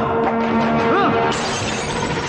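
Glass over a framed photograph shattering as it is struck, a little over a second in, with dramatic film score music.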